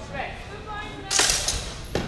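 A longsword strike in a fencing exchange: one loud, sharp hit about a second in that fades over half a second, and a smaller knock near the end, with voices around it.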